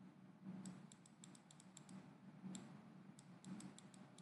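Faint, irregular clicking from the input device used to handwrite on a digital slide, about a dozen short clicks in small clusters, over a faint low hum.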